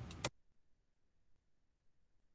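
The end of a spoken word with a short click, then dead silence.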